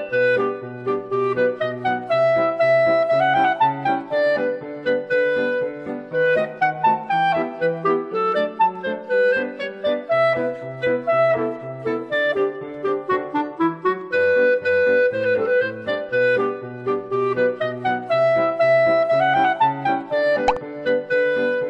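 Light instrumental background music: a woodwind melody over a bass line of short, evenly repeated notes.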